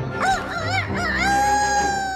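A cartoon griffin's rooster-like crow: a few short wavering notes, then one long held note, over background music.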